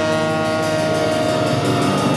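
A live blues band with trumpet, saxophone, electric bass, keyboard and drums holding one long, loud sustained chord.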